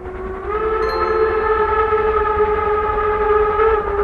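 A steam locomotive whistle sounding one long chord of several tones over a low rumble; the pitch lifts slightly about half a second in.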